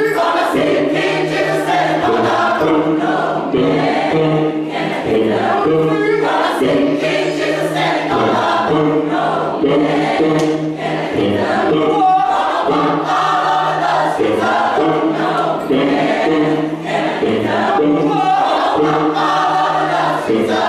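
Youth church choir singing a worship song together in many voices, loud and continuous.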